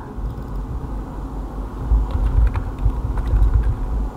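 A low rumble, heaviest in the second half, with a few faint clicks of keyboard typing as a text label is retyped.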